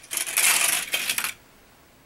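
Small plastic toy car rattling down a plastic stunt track, ending in a clatter as it knocks over the plastic Shredder figure. The busy clatter lasts about a second and stops abruptly.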